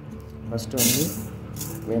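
Fenugreek seeds poured by hand into an empty metal pot, rattling and scattering across the metal bottom: a brief hissing patter about a second in, then a shorter one.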